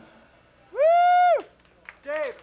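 A single high "whoo" call from a person's voice: it slides up, holds steady for about half a second, then slides down.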